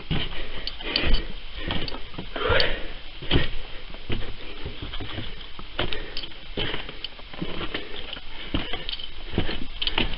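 Irregular scuffs, scrapes and knocks of a person moving around and handling the camera inside a small rock-walled hole, with a brief vocal sound about two and a half seconds in.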